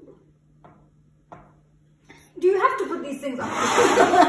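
A few faint short taps over a low steady hum, then from about two seconds in loud laughing and talking.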